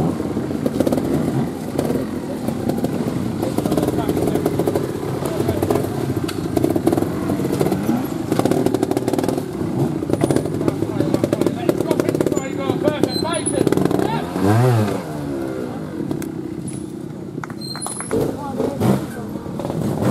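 Trials motorcycle engine working in bursts of throttle as the bike is ridden up and over boulders, with one quick rev that rises and falls in pitch about three-quarters of the way through.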